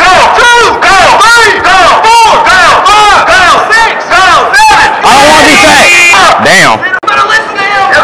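Loud, rhythmic shouting from young men, a run of rising-and-falling yells about three a second, like a chant, with a short break about seven seconds in.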